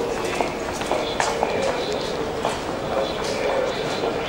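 Station concourse background noise, with hard-soled footsteps clicking irregularly on the floor over indistinct voices.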